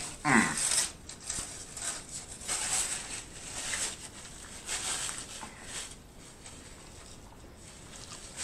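A short hummed "mmm" of enjoyment, then close-miked chewing of a mouthful of food: irregular mouth sounds that die away about six seconds in.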